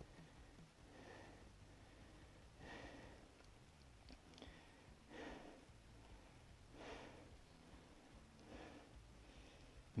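A man's faint breathing over near silence, a soft breath every second or two.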